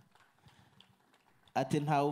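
A pause in a man's amplified voice: about a second and a half of near silence with a few faint clicks, then the man's voice comes back in, loud and in long held tones.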